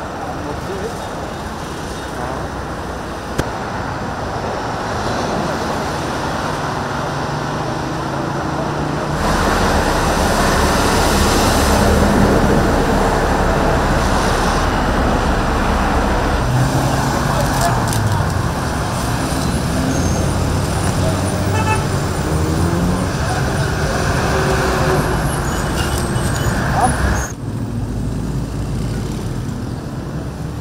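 Dense, slow highway traffic: cars, trucks and motorbikes running past, their engine notes rising and falling, with the sound getting louder about a third of the way in.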